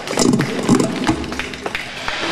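A band's pause between songs: scattered taps and knocks from instruments being handled, with brief laughter and voices.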